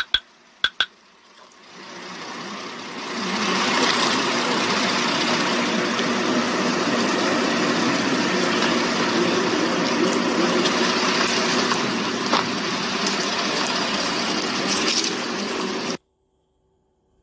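A vehicle engine running steadily with a low hum, building up over the first few seconds and then holding even. Two sharp clicks come near the start.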